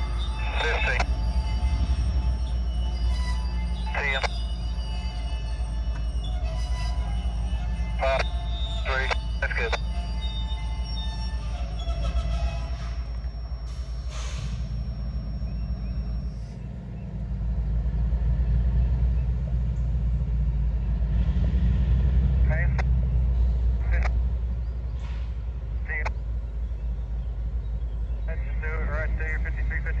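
Heavy freight train moving slowly: a steady low rumble, with thin, steady squealing tones from the wheels through roughly the first twelve seconds. Short distant calls, like voices, come and go over it.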